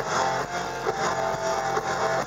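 A hard rock band playing live: an electric guitar riff over a drum kit, with no singing.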